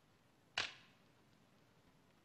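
A round flatbread torn by hand, a single short dry crackle about half a second in; otherwise near silence.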